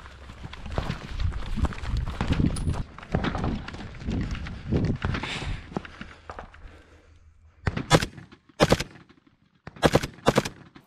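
Assault-rifle gunfire: many sharp shots in irregular succession over the first several seconds, over a steady low rumble. Three louder, separate reports come near the end.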